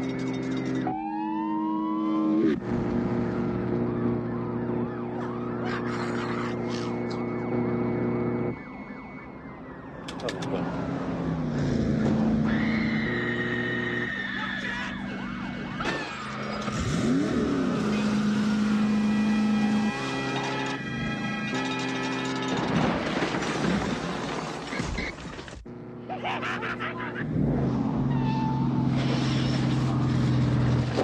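Police car sirens wailing over car and motorcycle engines in a movie chase sequence, mixed with a film score.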